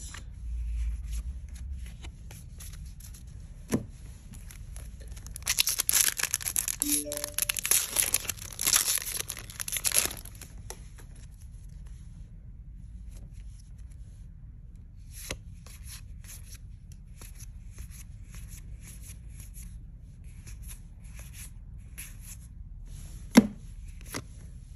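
A Magic: The Gathering set booster pack's foil wrapper being torn open, a burst of tearing and crinkling lasting about four seconds. Trading cards are handled before and after it, with a few sharp taps, the loudest near the end.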